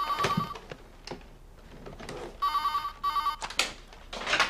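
Telephone ringing in a double-ring pattern: two short warbling bursts right at the start, and another pair about two and a half seconds in.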